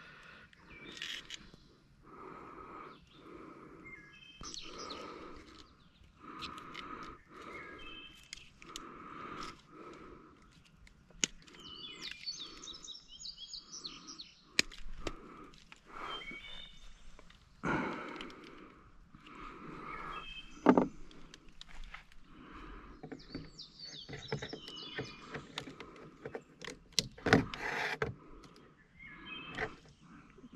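Birds chirping outdoors, one calling over and over about once a second, with higher chirps in clusters. Occasional sharp clicks and knocks from handling plastic tubing and a zip tie are mixed in.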